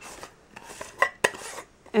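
A lidded jar of body scrub being handled: faint scraping, then two sharp clicks about a second in, a quarter of a second apart.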